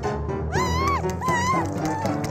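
Cartoon background music with two short high-pitched vocal cries from a character, each rising and then falling in pitch, the second following about half a second after the first.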